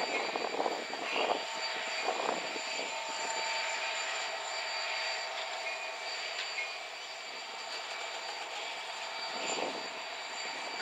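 Freight cars rolling slowly past on the rails: a steady rumble of wheels on track carrying faint, steady high-pitched tones, with a few irregular clunks in the first couple of seconds and another near the end.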